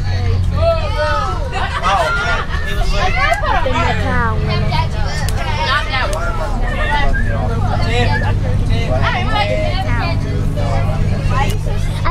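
Several passengers chattering at once over the steady low drone of a bus engine, heard from inside the bus.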